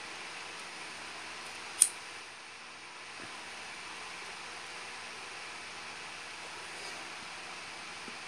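A cigarette lighter clicking once, sharply, about two seconds in, over a faint steady hiss.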